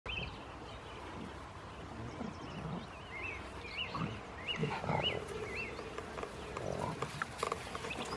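Bull terrier puppies making low, short growls as they play, with a run of about five quick high chirps near the middle.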